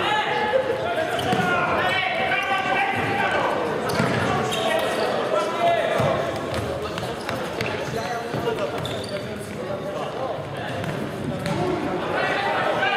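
Indoor futsal game: players' voices shouting and calling across an echoing sports hall, with scattered thuds of the ball being kicked and bouncing on the wooden floor.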